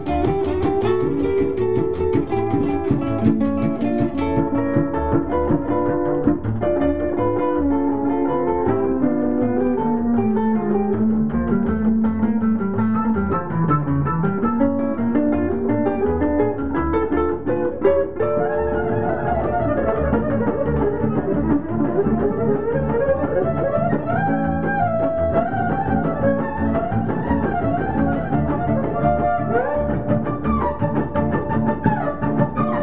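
Live acoustic string trio playing an instrumental tune on violin, archtop electric guitar and upright string bass. The guitar carries a falling melodic line over the bass for the first half, and the violin comes in with a wavering high line a little past the middle.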